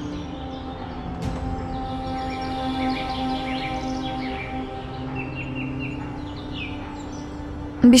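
Soft background score of long held notes, with small birds chirping over it.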